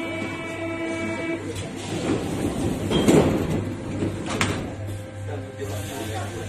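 Paris Métro train running, heard from inside the car. The rail noise swells to its loudest about halfway through, with sharp clacks about three and about four and a half seconds in, over a steady low hum.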